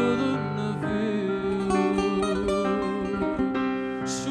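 A live fado song: a male voice sings long, wavering notes over piano accompaniment.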